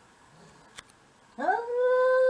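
A domestic cat's long yowl, starting about one and a half seconds in, rising in pitch at first and then held steady: a threat call at another cat.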